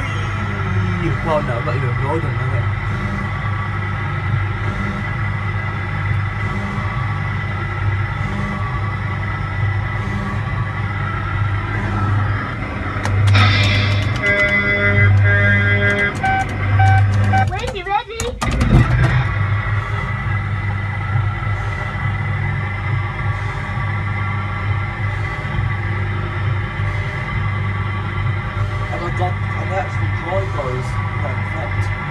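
Coin-operated dumper-truck kiddie ride running: its motor hums steadily under music and sound effects from its own speaker. About halfway through comes a louder passage of pulsed beeping tones, ending in a brief drop and a knock.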